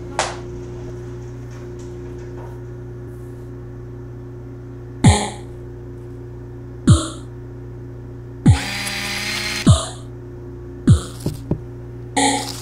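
Electronic soundtrack: a steady low machine-like hum, broken by about five short, sharp sounds that each drop quickly in pitch. A harsher noisy stretch comes just before the middle of the second half.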